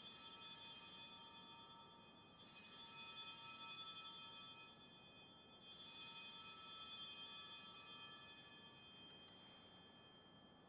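Altar bells rung three times at the elevation of the consecrated host, each ring a cluster of high, bright tones that lingers and fades for about three seconds before the next; the last dies away near the end.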